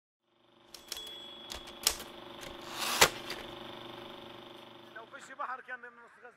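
Typewriter key strikes used as a sound effect: irregular sharp clacks over a steady held drone, the loudest strike coming after a short swell about three seconds in.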